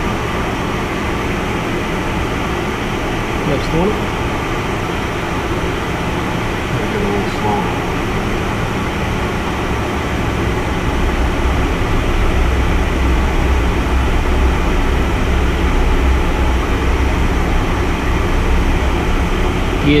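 Steady cabin noise of an aircraft in flight: a constant rush of airflow with an engine drone and a steady low hum, growing heavier in the low end about halfway through.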